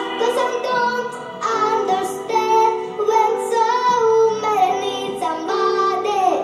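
A young girl singing over a pop backing track, with held notes that waver in pitch.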